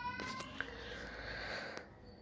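A faint, drawn-out high-pitched cry, rising slightly in pitch, that fades out about half a second in, followed by low background hiss and a soft click.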